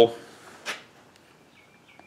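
A man's speech trails off, then a pause: one short soft breath-like noise, then quiet room tone.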